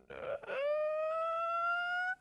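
A high-pitched wordless vocal whine, held for about a second and a half, rising slightly in pitch before it cuts off.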